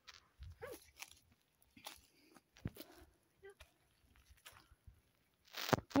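Faint, scattered footsteps and rustling through dry grass and brush, with one louder rustle just before the end.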